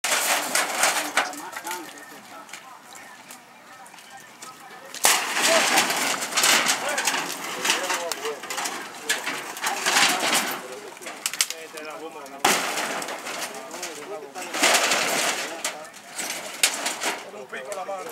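Crackling and snapping of dry brush, branches and debris, coming in loud spells between quieter ones, with voices faintly behind.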